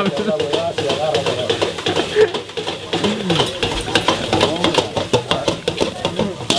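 A metal spatula scrapes and clinks rapidly against a wok as noodles are stir-fried over high heat, with sizzling underneath. Voices talk over it.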